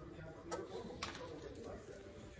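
Small steel hardware clinking on a greased wheel hub spindle: a light click about half a second in, then a brighter, ringing metallic clink about a second in.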